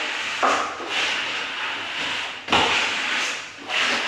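Plastic plastering trowel rubbing over set skim-coat plaster in a dry final pass, with no water on the wall: a scraping swish in long strokes, one starting about half a second in, another at about two and a half seconds and another near the end.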